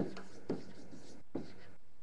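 Handwriting sounds: a pen scratching as it writes, with three light taps.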